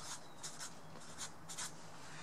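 Sharpie felt-tip marker writing on graph paper: a series of short, quiet scratchy strokes as an oval is drawn and a word is written.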